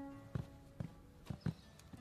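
Footsteps on a wooden floor: a handful of faint knocking footfalls, roughly two a second, as the tail of background music fades out at the start.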